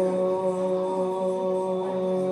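A man's amplified voice chanting one long note held at a steady pitch, a mantra-style chant.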